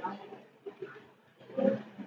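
Indistinct voices talking in a room. The talk drops to a lull about half a second in and picks up briefly near the end.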